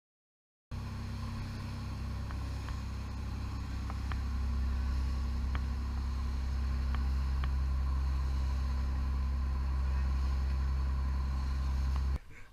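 Sportfishing boat underway, its engine running with a steady low drone over the rush of water along the hull, with a few faint clicks. The sound starts abruptly just under a second in.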